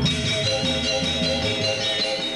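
A Balinese gamelan orchestra playing, with many bronze metallophones ringing together in a dense, shimmering texture over a low rhythmic accompaniment.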